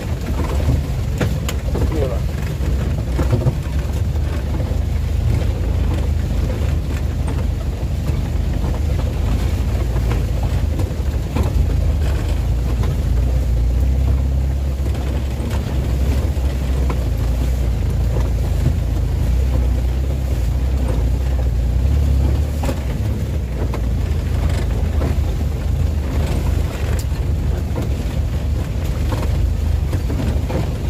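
Isuzu Elf microbus's diesel engine running steadily, heard from inside the cab, with the body knocking and rattling as it drives over a rough, potholed dirt road.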